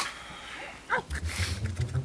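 A puppy's whimpers and yips from a children's puppet show's soundtrack, with a sharp click right at the start.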